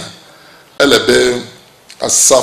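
A man's voice: one short, throaty spoken word about a second in, with brief pauses either side.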